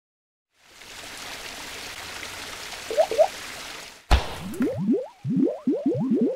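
Outro sound effects for a logo animation. A steady water-like hiss runs for about three seconds, with two short chirps near its end. About four seconds in there is a sharp knock, followed by a rapid run of short rising bloopy glides, three or four a second.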